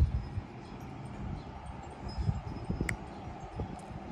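Outdoor street ambience: a low rumble of wind on the phone microphone, a faint high ringing, and one sharp click about three seconds in.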